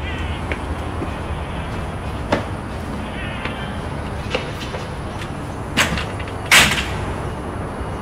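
A metal grille security gate being handled: a few clicks and clanks, the loudest and longest about six and a half seconds in. A steady low rumble runs underneath.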